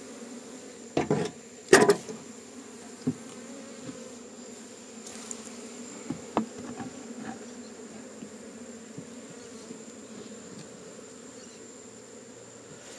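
Honeybees buzzing steadily in a dense cloud around an opened wooden hive. A few sharp knocks come from handling the hive's wooden parts, the loudest about two seconds in.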